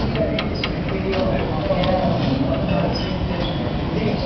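Indistinct voices talking under a steady low rumble.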